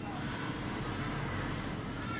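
Steady background noise: an even hiss with a faint low hum, with no distinct clicks or other events.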